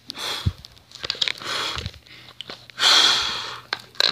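A person breathing or hissing close to the microphone: three long, breathy exhales, with a soft low thump at the first two.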